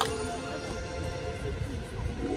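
A quiet stretch of a light show's soundtrack music over outdoor loudspeakers, with horse sound effects (a neigh tailing off and hoofbeats) mixed in.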